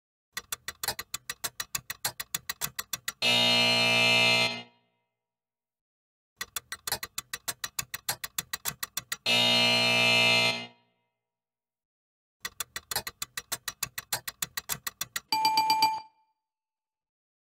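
Slot-machine sound effects: a run of rapid reel-spinning clicks ending in a low buzzer, twice over, then a third run of clicks ending in a bright ringing ding. The buzzers mark a losing pull and the ding a winning one.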